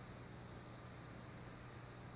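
Faint steady hiss with a low, even hum: the noise floor of an old videotape recording over a blank stretch, with no programme sound.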